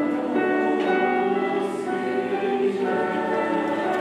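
A mixed choir of teenage voices singing in harmony, holding sustained chords that change together.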